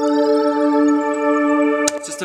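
Ambient synthesizer pad holding a steady chord, with a faint rising shimmer in its upper tones. It stops abruptly with a click near the end.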